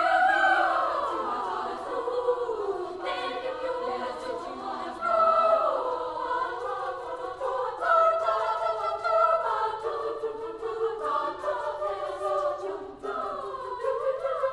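Girls' choir singing in several parts, the high voices moving through held chords and shifting lines.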